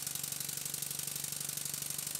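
Stuart 7A model vertical steam engine running steadily on compressed air, a fast, even patter of exhaust beats and mechanism clicks over a low hum. It is running with its reversing valve gear set to the end of the expansion link where it runs well.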